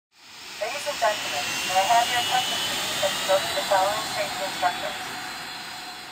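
Intro sound effect: a long airy whoosh that swells within the first second and slowly fades, under a faint slowly rising whine, with a scattering of short chirping blips.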